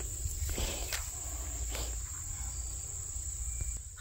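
Steady high-pitched insect chirring, like crickets, over a low rumble, with a few faint soft rustles.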